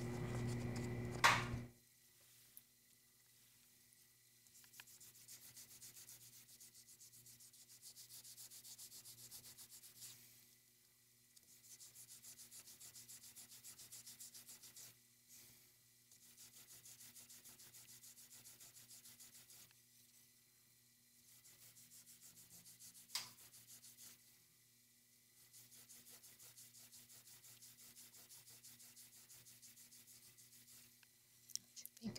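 Fired cloisonné enamel pendant being hand-sanded with an abrasive pad, heard as quiet bouts of fast, fine rubbing strokes a few seconds long with short pauses between them. A louder handling noise comes in the first two seconds, and a single click sounds about three-quarters of the way through.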